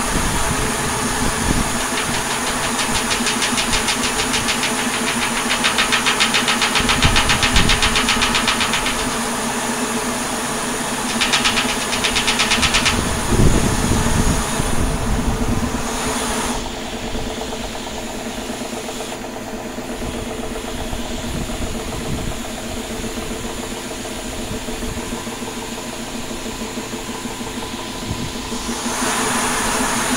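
Home-built rotating flow turbine, two metal stock-pot lids sandwiched together, spinning on pressure fed through its top hub: a steady hum with a rushing hiss and a fast fine rattle in the first half. It runs a little out of balance. The hiss falls away about halfway through and comes back near the end.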